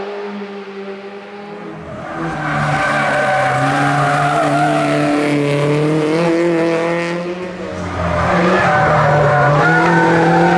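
Peugeot 106 hillclimb race car's engine running at high revs as it climbs, the revs rising and dipping. It is quieter at first, then much louder from about two seconds in, dips briefly and comes back louder again near the end as the car comes close.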